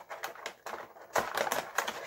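Clear plastic packaging crinkling and crackling as it is handled, in quick irregular crackles that grow louder about a second in.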